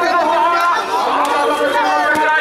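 Crowd of men talking and calling out over one another, a dense babble of many voices.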